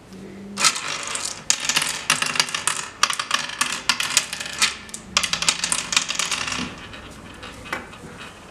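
Oware seeds clicking and rattling against the wooden pits of an oware board as a player moves them from pit to pit, in quick runs of clicks that start about half a second in and stop just before the end.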